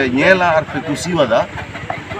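Speech only: a woman talking in short phrases, with no other sound standing out.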